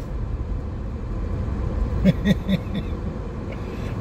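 Steady low rumble of a car idling with its air conditioning running, heard from inside the cabin. About two seconds in, a few short voice sounds in quick succession, like a brief chuckle.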